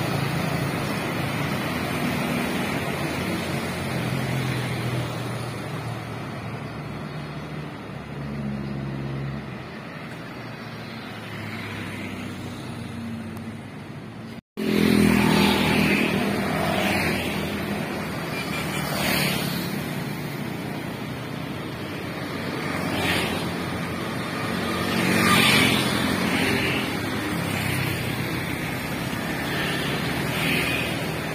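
Road traffic passing close by: motor scooters and small cars going by one after another, each swelling and fading as it passes. The sound drops out for a moment about halfway through, then the traffic noise carries on louder.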